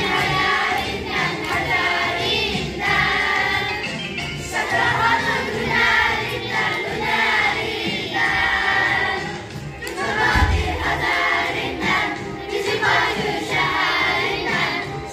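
A group of children singing a song together. There is a brief low thump about ten seconds in.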